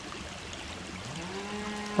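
A man's drawn-out "hmm" hum over a steady outdoor hiss. It starts about halfway through, rises in pitch and then holds, running straight into speech.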